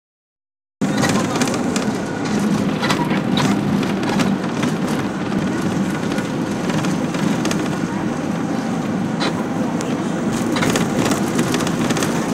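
Cabin noise inside a moving bus: a steady engine and road rumble with scattered rattles and knocks. The sound starts abruptly about a second in.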